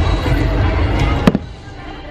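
Fireworks going off: a continuous rumble of bursts and crackle, then one sharp, loud bang about a second and a quarter in, after which the sound falls away quieter.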